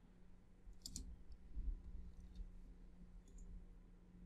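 Faint computer mouse clicks: a sharp pair about a second in, then a few lighter clicks, with a soft low thud in between.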